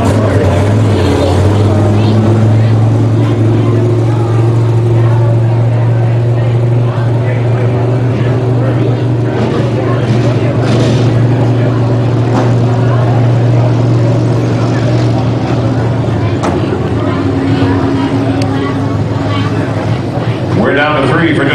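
Engines of a field of sport modified dirt-track race cars running in a steady drone, without sharp revving or breaks.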